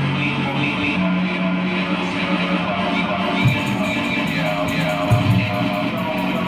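Live amplified electric guitar music: held low notes that shift pitch about a second in, with a few low thuds later on.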